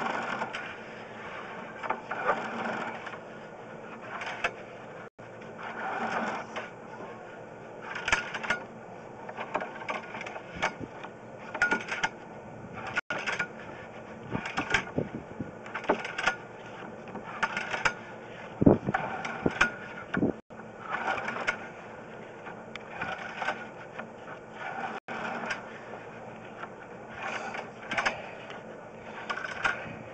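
Sewer inspection camera push cable being fed by hand into the sewer line: irregular rattling and scraping in strokes every second or two, with a few sharp clicks.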